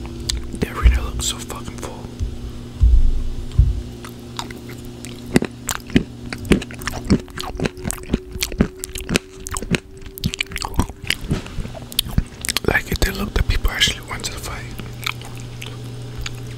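Close-miked chewing of crunchy nuts (cashews and peanuts), with many sharp crunches coming in quick, irregular succession.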